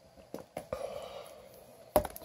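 Light handling of a replacement laptop LCD panel: a few faint clicks and rustles, then one sharp tap near the end as the panel is set down on the laptop.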